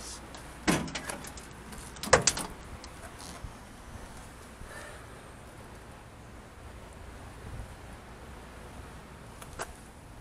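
Steel door of a 1969 Ford Econoline van being handled on its hinges, giving a knock about a second in and a louder clunk about two seconds in.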